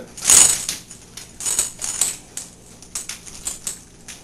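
Two greyhounds moving about on a hard floor: scattered light clicks and jingles of nails and collar tags, with a louder rustling burst just after the start.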